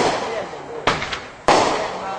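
A Legend Screw Face consumer fireworks cake firing its shots. There are two sharp bangs, a lighter one about a second in and a louder one about a second and a half in, each trailing off over half a second.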